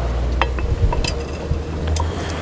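A glass soda siphon bottle is set down into the metal cage of a bar-top siphon refiller, with a few faint clinks of glass and metal about half a second apart over a steady low rumble.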